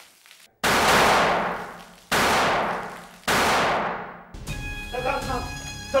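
Three loud gunshots about a second and a half apart, each with a long echoing tail. Dramatic music then comes in near the end, under a man's shouting.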